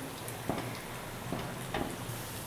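Hot oil sizzling steadily as potato pieces deep-fry in a metal kadai, with a few light clicks of a steel slotted ladle against the pan.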